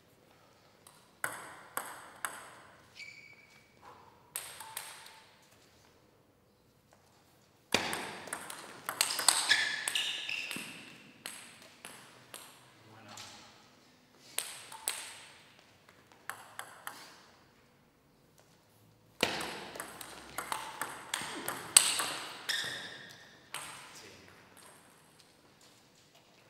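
A plastic table tennis ball clicking off rubber-faced bats and the table in quick runs of hits, each hit ringing briefly. There are three bursts of play separated by quiet pauses of a second or two.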